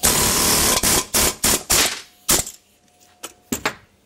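Pneumatic air hammer driving a valve guide out of a cast-iron Ford 172 diesel cylinder head: one long burst of hammering, then several short bursts, then a few fainter knocks near the end.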